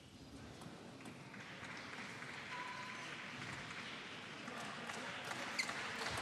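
Low murmur of a crowd in a large sports hall between table tennis points, slowly growing louder, with a few faint ticks of a table tennis ball.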